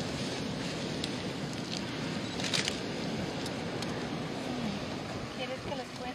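Steady rushing noise of wind and surf on a sea turtle nesting beach, with faint voices in the background and one short rustle partway through.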